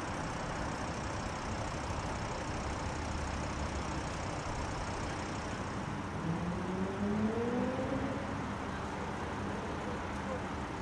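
Steady outdoor rumble of engine and traffic-type noise, with a vehicle engine rising in pitch for a couple of seconds about six seconds in, the loudest moment.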